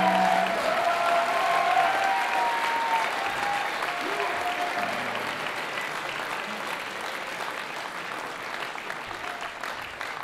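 Concert audience applauding, with shouts over the first few seconds, as the song's final chord stops about half a second in. The applause slowly dies down.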